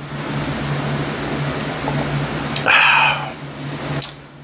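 A man sipping iced coffee from a plastic cup: a drawn-out slurp, then a louder, short breath out a little before three seconds in.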